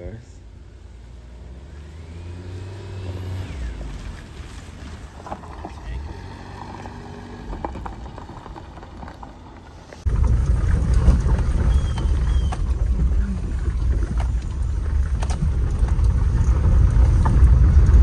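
Honda Z turbocharged four-wheel-drive kei car driving across a grassy field, heard from outside, its engine note rising about two to three seconds in. About ten seconds in the sound jumps to a much louder low engine and road rumble inside the cabin as it drives on a rough track, with occasional sharp knocks.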